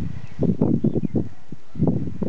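Low, muffled thumps and rumbling close to a handheld camera's microphone as the camera is carried and turned, in two short clusters.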